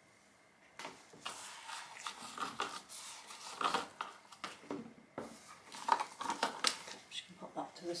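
Plastic bucket of soap batter being handled and set down on a stainless-steel counter: a run of irregular knocks and clicks with rustling, starting about a second in.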